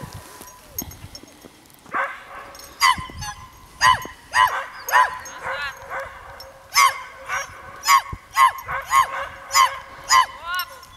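A dog barking over and over in short, high-pitched yips, starting about two seconds in and coming about twice a second, with a brief pause in the middle.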